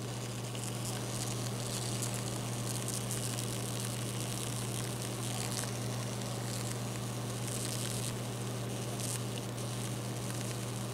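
A spoiled, slimy watermelon fizzing and crackling steadily as it bursts, "like an electrical sound": the melon is fermenting inside and gas is forcing juice out through its rind. A steady low hum runs underneath.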